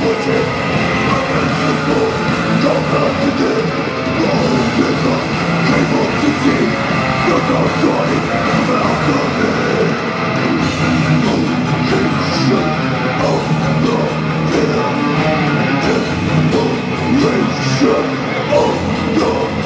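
Heavy metal band playing live at full volume: distorted electric guitars, bass guitar and drums.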